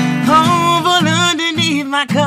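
Male singer holding and bending high, wavering notes in a vocal run, without clear words, over strummed guitar chords: a live voice-and-guitar performance of a soul/R&B song.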